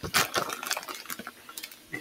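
Handling noise from a plastic package of turkey pepperoni over a baking pan. A few light clicks and clatters come in the first half second, then sparser faint ticks and rustling.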